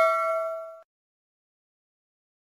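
A single bell ding, likely the notification-bell sound effect of a subscribe reminder, ringing out with a few clear tones and fading. It cuts off suddenly a little under a second in.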